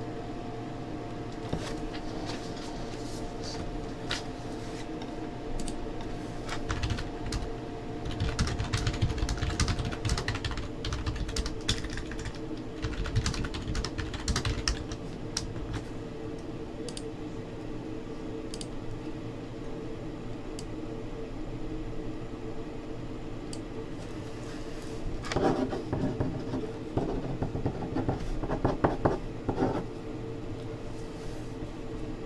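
Computer keyboard and mouse clicks, scattered at first and then in a quicker run near the end, over a steady electrical hum.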